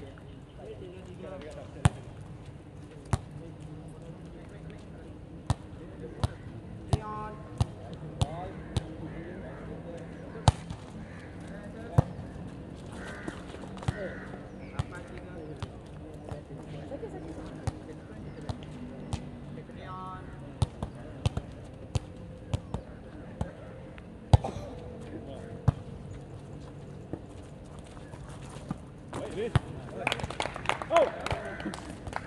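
A volleyball being struck during play: a string of sharp, separate smacks of hands and arms on the ball, some louder than others, with players' voices in between.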